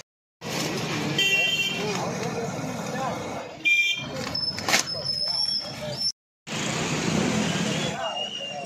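Busy street sounds: a crowd of people talking over traffic, with vehicle horns tooting briefly, once about a second in and again near the middle. The sound cuts out completely twice for a moment.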